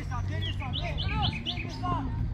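A bird chirping: a quick run of short, high chirps from about half a second in to near the end, over voices calling out.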